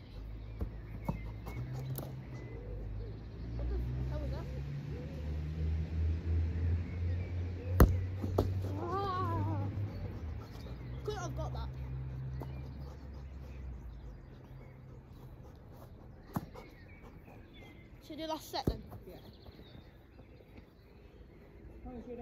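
A low, uneven rumble, like wind on the microphone, for most of the first fifteen seconds. About eight seconds in there is a sharp knock, the football being kicked, with fainter knocks later. Faint short calls come around nine and eleven seconds.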